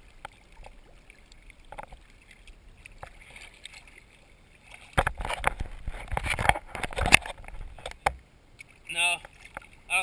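Lake water splashing and sloshing right at the microphone: a few small splashes at first, then a louder stretch of splashing and slapping from about five to eight seconds in. A voice calls out about a second before the end.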